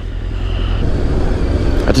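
Sport motorcycle engine running under way, with wind rumble on the microphone; the noise fills out about halfway through as the bike gathers speed.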